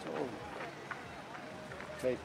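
Faint background talk from people standing about outdoors, with a few light ticks scattered through it.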